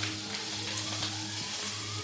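Chicken legs and wings sizzling in hot olive oil in a pan, turned over with tongs, browning to crisp the skin.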